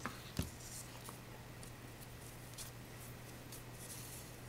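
Hands handling and twisting a length of fabric ric rac ribbon at a craft table, with faint scattered rustles and small clicks and one soft knock about half a second in. A faint steady low hum runs underneath.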